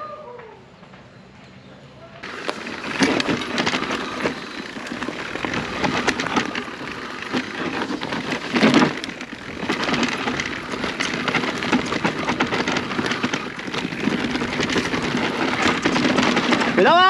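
Mountain bike riding down a rocky trail: a dense noise of tyres on loose stone with constant rattling clicks. It starts suddenly about two seconds in, after a short quiet stretch.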